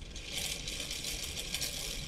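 Homemade series-wound DC motor starting up a moment in and running under load, with a bucket holding four screws: a fast, dense mechanical rattle from its brushes and commutator.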